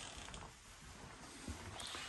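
Faint room tone with a small click and a few soft low thumps, like footsteps and camera handling while walking through a room.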